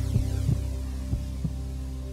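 Game-show suspense music: a sustained low drone with a heartbeat-like double thump about once a second.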